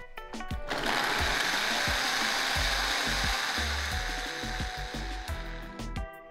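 Countertop blender motor running steadily with a small cup, grinding chunks of ginger into paste. It starts about a second in and winds down near the end.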